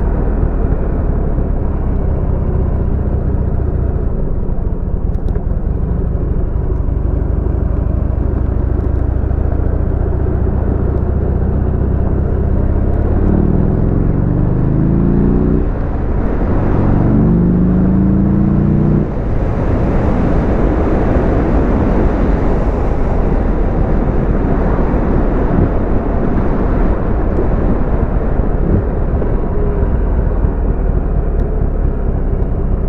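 Buell XB12X Ulysses motorcycle's air-cooled V-twin running on the road as the rider rides along. About halfway through it revs up twice with a short break between, a gear change, then settles into steady engine and wind noise at speed.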